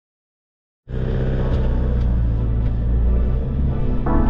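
Silence for just under a second, then ambient background music starts suddenly, over a heavy low rumble like a vehicle's engine and tyres heard from inside the cabin.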